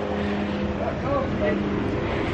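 A steady mechanical hum over a constant noise haze, with faint voices in the background.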